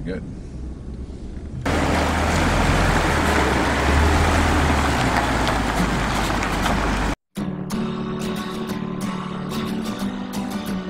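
Low rumble inside a pickup cab. After about two seconds it jumps to a loud, steady truck noise with a deep rumble, which cuts off abruptly a little past seven seconds. Guitar music then starts.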